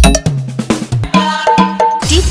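Hard bass EDM DJ remix: a last heavy kick drum, then a held low bass note, then a run of short, pitched cowbell-like synth hits in the second half.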